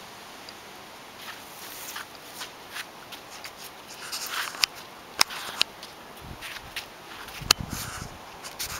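Puppy's claws and feet clicking and scuffing on concrete paving slabs, with light rustling. The clicks are scattered, and a few sharper ones come in the second half.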